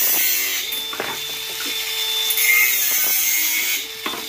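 DeWalt angle grinder with a cutoff disc cutting through copper tubing: a loud, steady grinding hiss over the motor's whine, which fades and comes back twice as the disc bites into the pipe.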